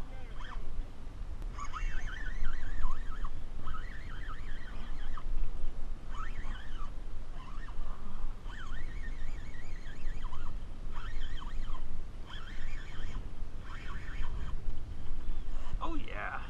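Spinning reel's drag paying out line in repeated surges, a wavering whine about a second long each time, as a hooked fish runs against the bent rod. A steady low rumble of wind on the microphone runs underneath.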